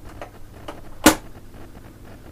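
A single sharp mechanical click about a second in, from hand-operated controls on the deck of a 1964 Peto Scott valve reel-to-reel tape recorder, with a few fainter clicks before it and a low steady hum underneath.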